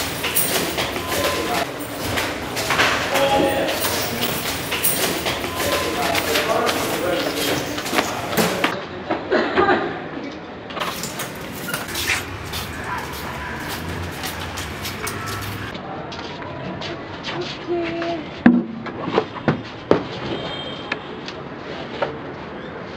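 Location sound of people walking and moving about, with footsteps, scattered knocks and indistinct voices. A few sharp knocks come near the end.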